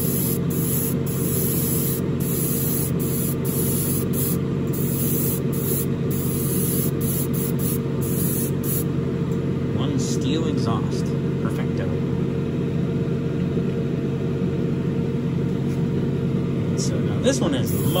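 Airbrush spraying in a run of short hisses, the trigger released briefly between them, over a steady low hum. The spraying stops about halfway through, leaving the hum, and starts again at the very end.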